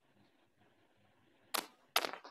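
Faint background noise, then two sharp clicks near the end, a little under half a second apart.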